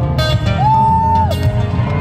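Solo steel-string acoustic guitar played live through a large hall's PA, plucked notes mixed with regular percussive slaps on the strings.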